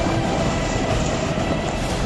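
Landslide: boulders, earth and bushes crashing down a hillside onto a road, a dense continuous rumble and clatter of falling rock.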